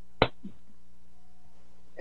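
A single sharp click about a fifth of a second in, with a fainter tick just after, over a faint steady hum.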